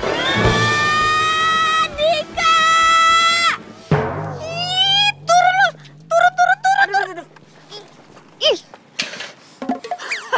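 A shrill scream, rising at first, held for about three and a half seconds and then breaking off. It is followed by a run of short, high, shouted cries.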